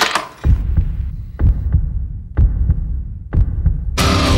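Dance music pared down to a deep, throbbing bass line and kick drum, with the high end filtered away; a strong beat lands about once a second.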